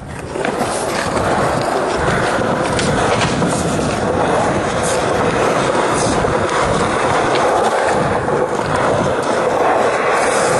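Skateboard wheels rolling over smooth concrete: a steady rolling rumble that comes up about half a second in and holds.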